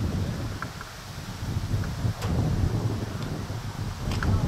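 Wind buffeting the microphone: an uneven low rumble that swells and dips, with a few faint ticks above it.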